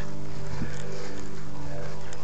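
A steady, unchanging low hum over an even hiss.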